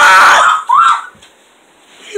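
A child screaming with excitement at a good card pull: a loud scream that breaks off about half a second in, followed by a second short yell.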